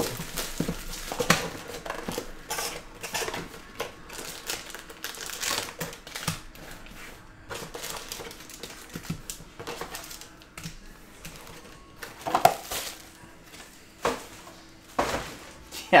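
Cellophane shrink wrap crinkling as it is torn off a sealed trading-card hobby box, then cardboard and foil card packs rustling and tapping as the packs are pulled out of the box and stacked, heard as a string of irregular crinkles, clicks and taps.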